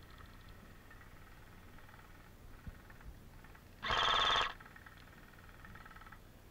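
AK-style airsoft replica firing one short burst of about half a second, about four seconds in, loud against a low background.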